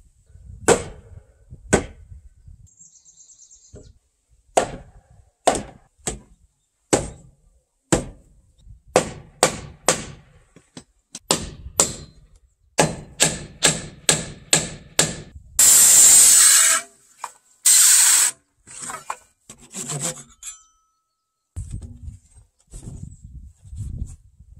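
A large wooden mallet knocking a wooden post into its joint, a string of sharp wooden knocks about a second apart that quicken to about two a second. Two loud rushing bursts of noise, each about a second long, follow near two-thirds of the way through.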